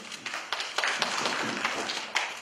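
Scattered hand clapping from a small audience, a dense run of irregular claps.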